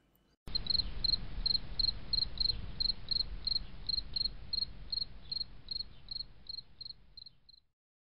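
Cricket chirping: a steady train of short, high chirps, nearly three a second, over a faint low hiss, fading out and stopping shortly before the end.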